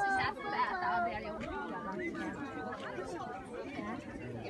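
Chatter of people's voices in the background, not close enough to make out words.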